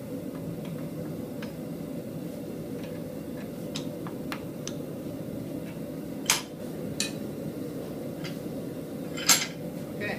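Metal-on-metal clinks and clanks from tongs and a blacksmith's post vise as a red-hot steel workpiece is set in the jaws and clamped: scattered light clicks, with two louder clanks about six and nine seconds in, over a steady low hum.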